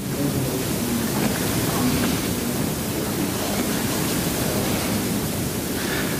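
A steady, even hiss of recording noise that starts abruptly as the speech stops, with a faint low murmur beneath it.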